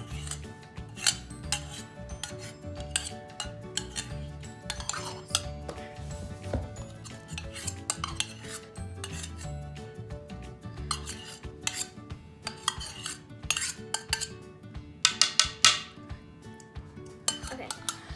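Metal spoon scraping and clinking against the inside of a stainless steel measuring cup, working thick white glue out of it in irregular strokes, with a quick flurry of louder scrapes near the end.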